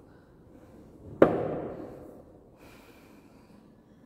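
A single sharp knock on a wooden window shutter about a second in, its echo dying away over about a second.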